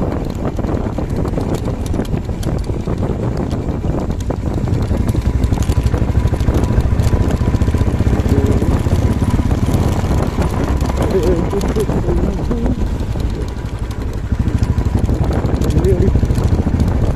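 Motorcycle engine running under way, with a rapid pulsing exhaust beat. It gets louder about five seconds in and eases off briefly near the end before picking up again.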